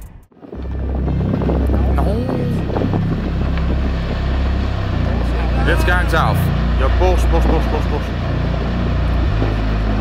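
Deep, continuous rumble of a large rockfall with a dust cloud pouring down a steep forested mountainside. Voices exclaim over it a few times.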